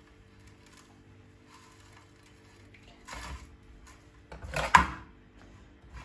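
Dry shredded kataifi dough being handled on a plate: a short rustle about three seconds in, then a sharp, crisp snip near the end as kitchen scissors bite into the dough. A faint steady hum runs underneath.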